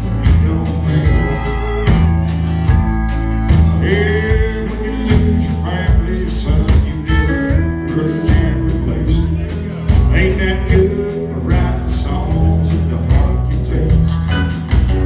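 A country band playing live on electric guitars, bass and drums with a steady beat, including some bending guitar notes.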